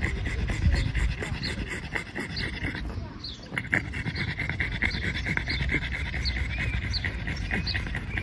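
A pug panting steadily and rhythmically through its open mouth, cooling itself in the summer heat; the panting breaks off briefly about three seconds in, then resumes.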